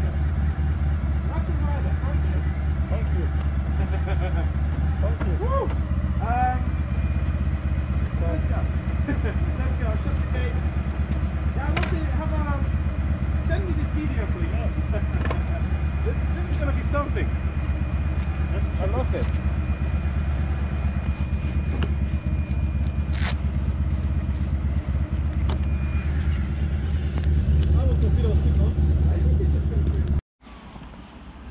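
Motorcycle engine idling steadily, with faint distant voices over it.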